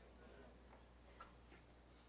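Near silence: room tone with a steady low hum and a few faint, brief clicks.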